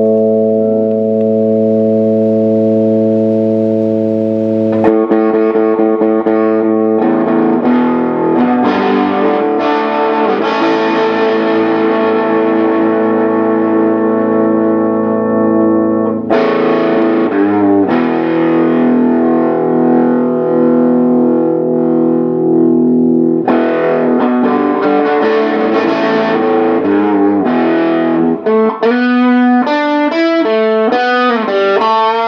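Electric guitar played through a Laney Cub 8 tube amp, cranked, with a Donner Morpher distortion pedal into a Celestion speaker, giving a heavily distorted hard rock and metal tone. A chord rings out at first, then fresh chords are struck about five seconds in. Chugging riffs follow, with fast single notes near the end.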